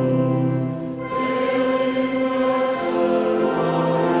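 A small mixed choir of men's and women's voices singing sustained chords in parts, with a short break between phrases about a second in.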